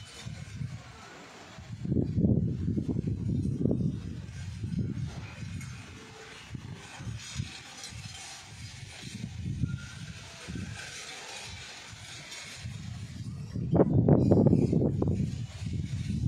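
Low, irregular rumbling of a thunderstorm, swelling about two seconds in and again near the end.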